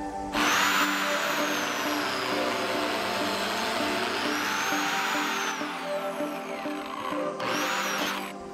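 Porter-Cable biscuit joiner running and cutting a slot into the edge of plywood. Its motor whine dips in pitch under load, recovers, then winds down about six seconds in, with a second short run near the end. Background music plays throughout.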